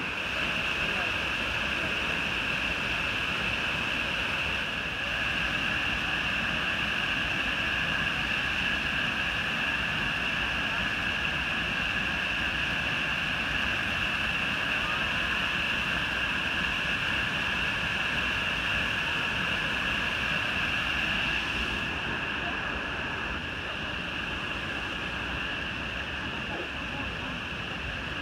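Minoo Falls waterfall rushing steadily, with a steady high-pitched drone over it; the sound thins a little near the end.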